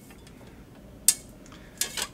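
A single sharp click about a second in, with a fainter one near the end: the yardstick knocking against the steel sword blade as the blade is measured.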